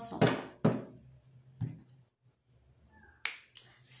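A few soft clicks and taps from tarot cards and a card deck being handled on a tabletop, ending with two sharp clicks in quick succession about three seconds in.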